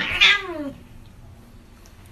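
Domestic cat letting out one loud yowl that falls in pitch over under a second, a protest at a small dog pestering and nipping at it.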